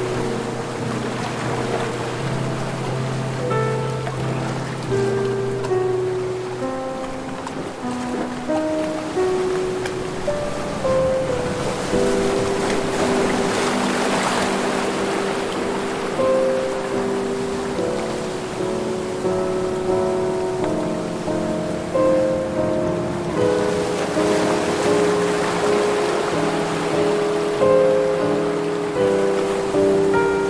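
Soft, slow instrumental music of long held notes over the wash of ocean waves breaking on a beach. The surf swells twice, about twelve seconds in and again near the middle of the second half.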